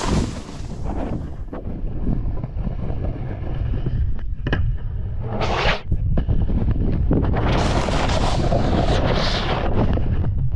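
Wind buffeting a body-mounted camera microphone during a snowboard run, with the snowboard scraping over rough snow: a short scrape about halfway through and a longer one over the last few seconds.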